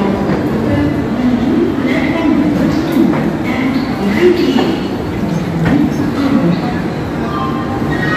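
LHB passenger coach of an express train rolling slowly along a station platform, with a steady train rumble and people's voices.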